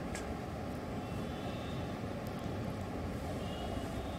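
Steady low rumble and hiss of outdoor background ambience, with no distinct sound event.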